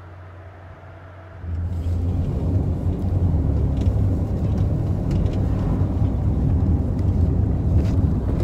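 A taxi driving, heard from inside the cabin as a steady low engine and road rumble that starts suddenly about a second and a half in. Before it there is only a faint low hum.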